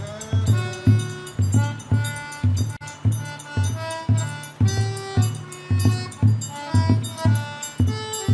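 A percussion band playing a steady beat: a bass drum struck with a mallet about twice a second, with bright metal percussion over it and a melody of held notes above.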